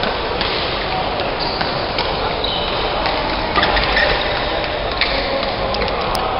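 Steady din of a busy indoor badminton hall, with a few sharp racket-on-shuttlecock hits; the loudest come between three and a half and four seconds in.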